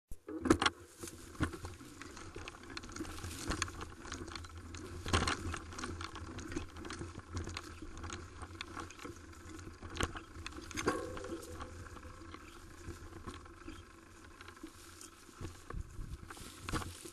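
Mountain bike riding down a leaf-covered dirt trail: tyres rumbling over the ground, with frequent rattling clicks and knocks from the frame, chain and parts as the bike goes over bumps, and a brief squeak a little before eleven seconds in.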